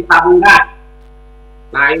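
Steady electrical mains hum on the remote audio feed, with two loud, sharp bursts close together near the start and a man's voice near the end.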